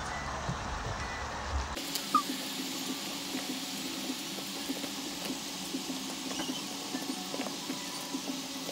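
Wooden chopsticks stirring and lifting noodles in a foil tray: scattered small clicks and scrapes over a steady low hum, with a change in the sound about two seconds in.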